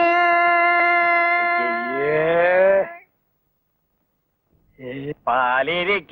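A man singing in Indian classical style: one long, steadily held note, with a second, lower voice sliding upward beneath it near the end. This stops about three seconds in, and after a short pause a wavering, quavering phrase begins.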